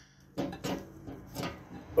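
A few short clicks and knocks from the steel safe's door handle as it is gripped and turned with the key in the lock.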